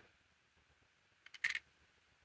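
A few faint, quick plastic clicks about one and a half seconds in, from a small N-scale model railway coach being handled in the fingers.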